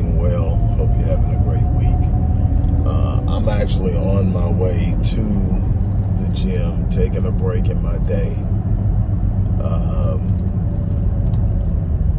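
Steady low road and engine rumble inside a moving car's cabin, under a man talking.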